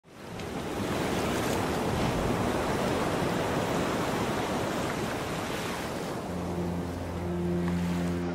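Ocean surf washing in a steady rush, fading in at the start. About six seconds in, a low steady held tone joins underneath.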